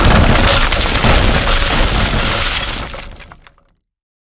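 Glass-shattering sound effect: a sudden loud crash, then a dense spray of breaking and tinkling shards that fades out over about three and a half seconds.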